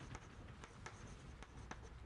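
Chalk writing on a blackboard: faint, quick taps and scrapes of the chalk stick against the board, about four strokes a second.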